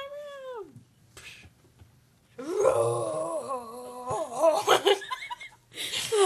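A person's voice wailing and laughing without words: a held note that falls away, then after a short pause a longer wavering wail broken by laughter.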